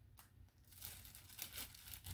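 Faint crinkling of a thin black plastic sleeve being pulled off a small potted African violet.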